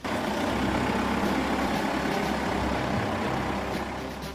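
Heavy truck engine running steadily, cutting in suddenly at the start.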